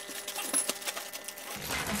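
Clear plastic vacuum-storage bag crinkling and rustling in an irregular run of light crackles and clicks as it is handled and filled with cushions.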